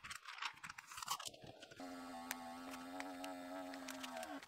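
A plastic vacuum storage bag crinkling and clicking as it is handled and sealed. Then, about two seconds in, a small electric vacuum pump starts and runs with a faint, steady hum, drawing the air out of a filament storage bag.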